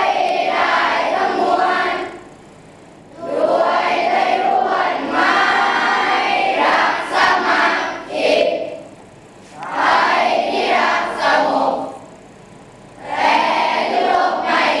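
A group of schoolchildren singing together in unison, in phrases broken by short pauses.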